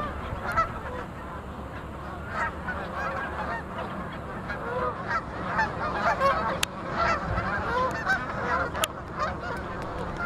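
A large flock of Canada geese honking, many calls overlapping into a continuous chorus.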